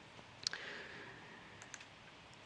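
Faint key clicks at a lectern, with one sharper click about half a second in and two small ones near the end, over quiet room tone.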